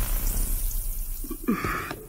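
Film sound effect of a character dissolving into particles: a fizzing hiss that fades away over about a second and a half, followed by a brief lower sound near the end.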